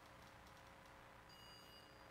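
Near silence: room tone with a faint steady hum, and a faint thin high tone in the second half.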